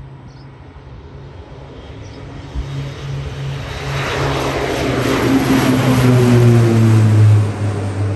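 Beechcraft 1900D's twin Pratt & Whitney PT6A turboprops at takeoff power as the plane lifts off and climbs out overhead: a propeller drone that grows steadily louder, its pitch falling as the aircraft passes, then easing off near the end.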